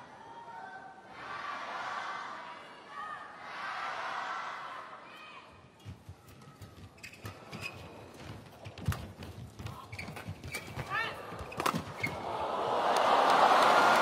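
Badminton rally on an indoor court: quick racket strikes on the shuttlecock, footfalls and brief shoe squeaks on the court mat. It ends in loud crowd cheering and applause near the end.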